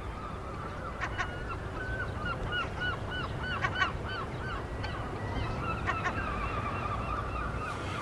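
A bird honking repeatedly: a run of short calls, two or three a second, lasting about five seconds, over a low steady rumble.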